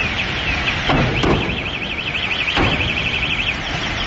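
An electronic siren sounding a high, repeating warble that speeds up into a fast trill about a second and a half in, over a steady low rumble with a few dull thumps.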